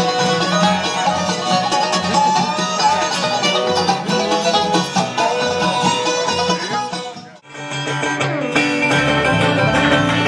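Live bluegrass band playing banjo, fiddle and guitars. About seven seconds in, the sound cuts out for a moment and a different live bluegrass set picks up.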